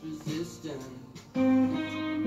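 Electric guitar lead played along with a recorded pop song; about a second and a half in, the music grows suddenly louder with a held note.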